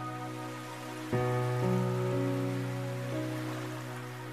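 Slow, soft background music of held notes, with a new chord struck about a second in and the melody moving on a few times after it.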